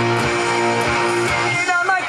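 Electric guitar strumming held chords in a rock song, with a singing voice coming in near the end.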